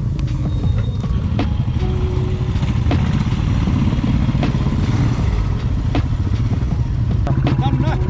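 Motorcycle engines idling, a steady low pulsing, with a few sharp clicks about every second and a half.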